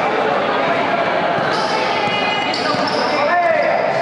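Basketball game in a gym: a ball bouncing on the court amid players' voices, with short squeaks about three and a half seconds in.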